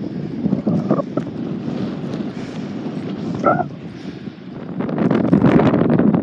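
Wind buffeting a phone's microphone, a steady rumble that grows loudest near the end, with a short vocal sound about three and a half seconds in.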